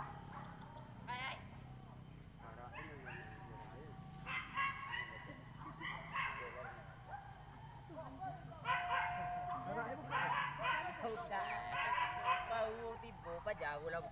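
A pack of boar-hunting dogs yelping and barking in scattered bouts, which become louder and almost continuous from about nine seconds in.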